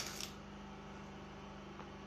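A brief rustle of fabric being handled at the very start, then a steady low hum.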